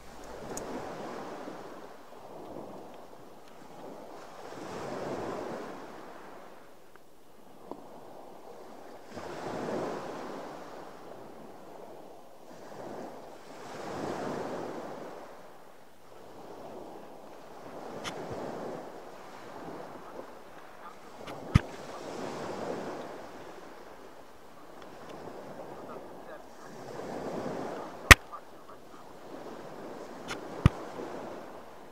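Sea water washing against the side of a boat, swelling and fading about every four to five seconds, with wind on the microphone. A few sharp clicks cut through, the loudest about two-thirds of the way in and near the end.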